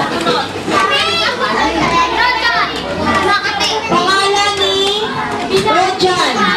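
A roomful of children talking and calling out over one another, many high voices overlapping without a break.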